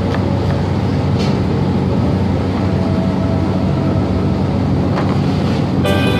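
A steady low hum of kitchen machinery, with two knife chops on a plastic cutting board: one about a second in and one near the end.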